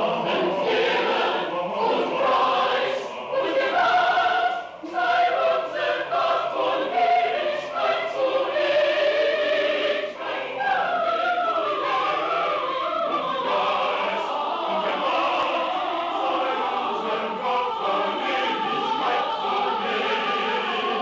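A mixed choir of men's and women's voices singing a choral piece together in several parts, sustained without a break.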